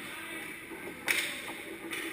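Ice hockey play on a rink: a sudden sharp hit or scrape on the ice about a second in, briefly echoing in the arena, then a smaller one near the end, over a steady rink hum.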